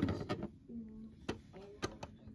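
Light clicks and knocks of small plastic toy kitchenware being handled on a wooden tabletop. There is a short handling noise at the start and two sharp clicks about half a second apart in the second half, with a faint murmured voice between them.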